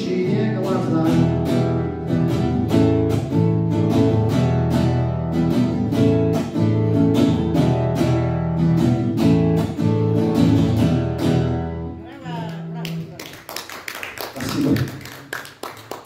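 Acoustic guitar strummed in a steady rhythm, played alone without singing, ending on a final chord about twelve seconds in. Short, scattered applause follows and fades away.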